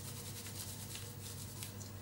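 Faint rubbing and rustling of plastic-gloved hands working hair dye into wet hair ends, over a low steady hum.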